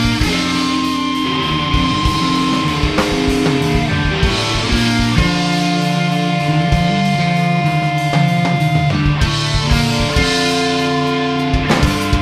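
Instrumental passage of a rock song without vocals, led by guitar over a steady beat of sharp strikes.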